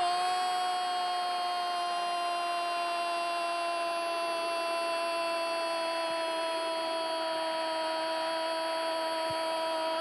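A male football commentator's long drawn-out "gol" cry, one unbroken held note lasting about ten seconds and sinking slightly in pitch, calling a goal just scored.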